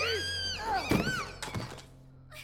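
A man screaming in a high, strained voice, cut by two loud thuds about a second and a second and a half in.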